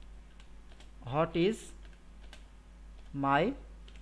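Computer keyboard typing: a run of light key clicks as a search query is typed. Two short bursts of voice, about a second in and near the end, are louder than the keys.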